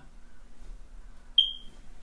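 A single short, high-pitched electronic tone sound effect about one and a half seconds in, starting sharply and fading away within half a second.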